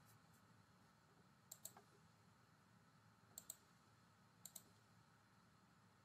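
Three faint computer mouse clicks over near silence, each a quick pair of ticks, about a second and a half, three and a half and four and a half seconds in.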